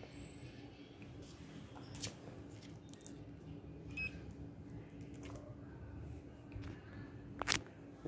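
Quiet room with a steady low electrical hum and a few faint handling clicks. About four seconds in there is a short, high electronic beep as the fingerprint is accepted, and a sharper click comes near the end.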